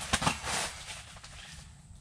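A short burst of rustling with a few light knocks near the start as a fish and gear are handled, then low background.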